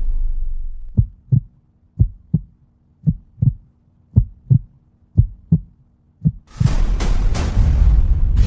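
Heartbeat sound effect: a double thump about once a second, six beats, over a faint steady hum. Dense, loud music cuts back in near the end.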